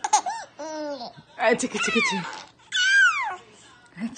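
A four-month-old baby laughing in several bursts of squeals and giggles, with a high squeal near the end that falls in pitch.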